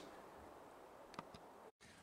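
Near silence: faint steady background hiss with two faint ticks a little past a second in.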